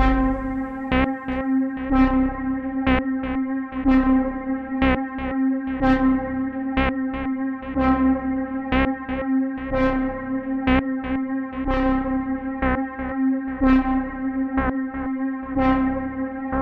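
Quiet outro of a song: with the full band gone, an electric guitar through effects picks single notes, one or two a second, each ringing out with echo over a sustained low drone.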